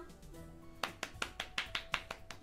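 Soft background music with held tones, joined a little under a second in by a quick run of about seven hand claps.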